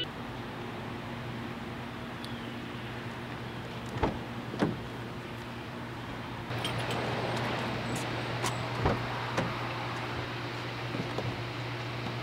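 Steady outdoor background noise with a low hum, broken by two soft thumps about four seconds in. About halfway through come faint, irregular light clicks, like footsteps on asphalt.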